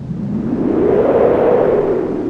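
Whoosh sound effect of an animated logo sting, a noisy swell that builds to a peak about a second and a half in and then eases off.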